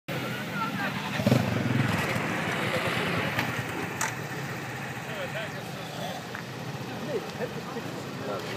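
A small motorcycle engine running and pulling away close by, loudest between about one and two seconds in and fading after that, with onlookers' voices around it.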